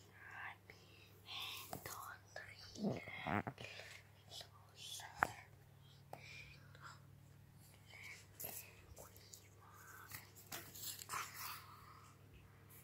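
A person whispering in short, breathy phrases close to the microphone, with a few sharp clicks, the loudest about five seconds in.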